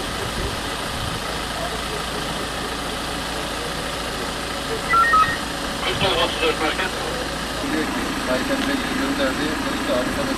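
Steady hum of an idling vehicle engine, with indistinct voices of people talking from about six seconds in. Two short high beeps sound around the middle.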